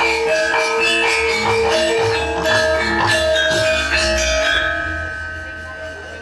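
Javanese gamelan ensemble playing, its bronze metallophones and gongs striking ringing pitched notes. The playing thins out and dies away over the last second or two, leaving one held tone.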